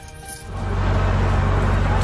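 Gatorland Express miniature train running on its track, a loud steady low rumble that starts about half a second in, over background music.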